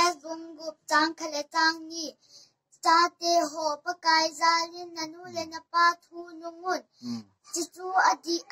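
A young girl singing alone, unaccompanied, in short sing-song phrases on a few held notes, reciting the names of the books of the Bible.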